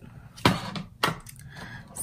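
Two short knocks, about half a second apart, as a small cardboard eyelash box is handled and set down.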